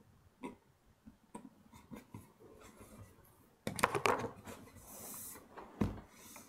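Carving knife cutting into a cherry woodblock: faint crisp nicks, then a louder rustling scrape about two-thirds in. A brief hiss follows as a hand brushes across the block, and there is a thump near the end.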